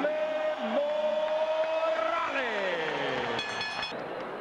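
A ring announcer's amplified voice drawing out one long shouted syllable for about two seconds, then sliding down in pitch, over steady arena background noise. A short high whistle-like tone sounds near the end.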